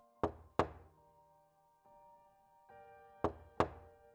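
Knocking on an apartment door: two quick knocks, then about three seconds later two more, with no answer. Soft background music of held notes underneath.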